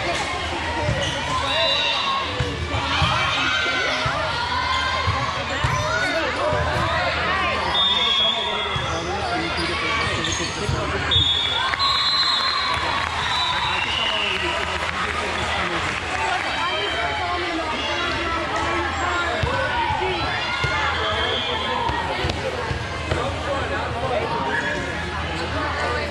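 Busy indoor volleyball-hall din: many players' and spectators' voices calling and shouting over one another, with volleyballs being hit and bouncing on the courts. A few short high squeaks come through in the middle.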